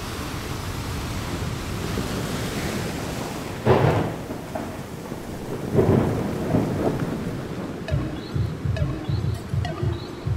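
Thunderstorm sound effect: steady rain hiss with two loud rolls of thunder, about four and six seconds in. A low pulsing beat starts about eight seconds in.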